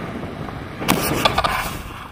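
Airflow rushing over the microphone of a camera held on a selfie stick in paraglider flight. A quick cluster of knocks and rattles comes about a second in.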